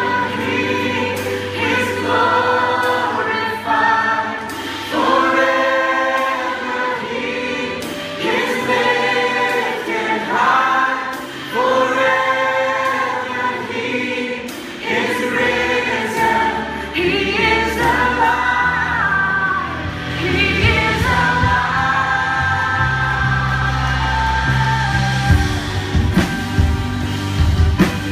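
Live worship music: many voices singing a slow worship song together over a band's sustained low notes, the bass growing fuller in the last few seconds.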